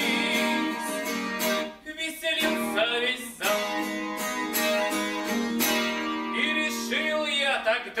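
Steel-string acoustic guitar strummed in a steady rhythm of chords, with a man's singing voice coming in near the start and again in the last second or so.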